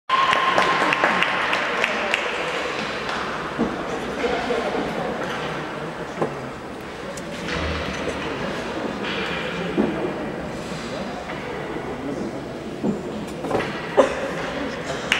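Ice rink ambience: indistinct talking from people around the rink over a steady hum of room noise, with a few scattered knocks and clicks.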